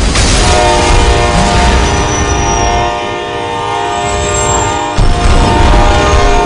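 Diesel locomotive air horn blaring a long held chord of several notes over a low rumble. About five seconds in, a sudden loud low rumble cuts in under the horn.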